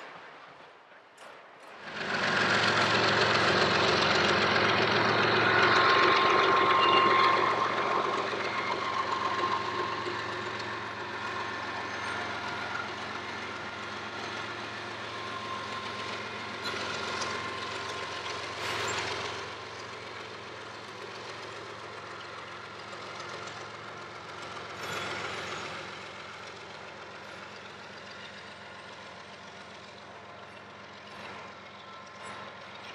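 A freight train of autorack cars rolling past: a steady rush and clatter of wheels on rail with faint squealing tones. It comes in suddenly about two seconds in and then slowly fades.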